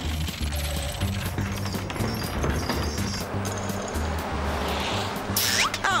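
Cartoon underscore music with a pulsing bass line over a steady noisy rumble of sound effects, ending in a crash about five seconds in as an old castle wall falls down.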